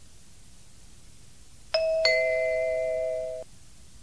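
Two-note electronic ding-dong chime, a higher tone followed a third of a second later by a lower one, both held for about a second and a half before stopping together. It is the signal between items of a recorded listening test.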